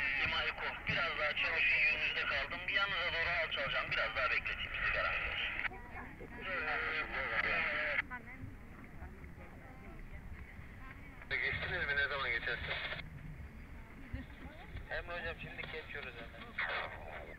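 Hot-air balloon propane burner firing in three blasts of rushing noise that start and stop abruptly. The first lasts about six seconds, the next two are shorter: one just after the middle, one a little later. Voices talk underneath.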